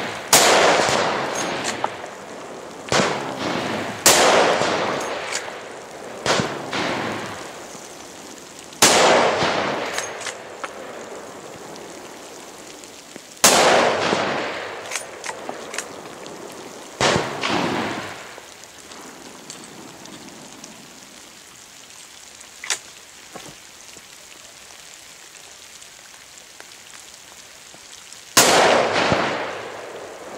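Hunting rifle shots, about eight at irregular intervals with longer gaps later on, each a sharp crack followed by an echo that rolls away over a second or two.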